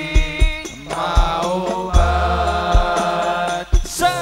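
Male voices singing sholawat in unison through a PA system, backed by a hadrah ensemble of frame drums whose deep drum beats land every half-second or so, with a held low bass note about two seconds in.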